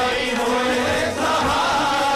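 Shabad kirtan sung by a large group of Sikh ragis in unison, a sustained devotional chant with tabla and harmonium accompaniment.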